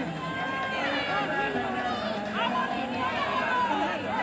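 Crowd chatter: several voices of players and spectators talking and calling out at once, overlapping at a fairly even level.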